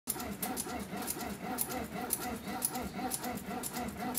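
Hand-operated bat-rolling machine working a composite BBCOR bat barrel, its rollers giving a rhythmic squeak about four times a second, with light high clicks about twice a second.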